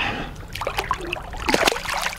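A northern pike being released into the river: small splashes, then a louder splash about one and a half seconds in as the fish goes into the water.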